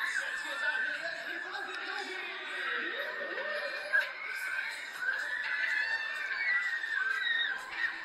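Several riders screaming and laughing at once, their voices high and overlapping as the thrill ride spins them. A short sharp knock comes about halfway through.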